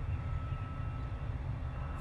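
Wind buffeting an outdoor microphone: a steady low rumble with no distinct events.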